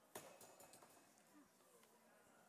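Near silence: room tone, with a faint knock shortly after the start and a few fainter clicks after it.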